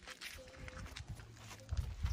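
Footsteps on a dirt path, with soft thuds that grow stronger near the end. A faint, short distant call is heard about half a second in.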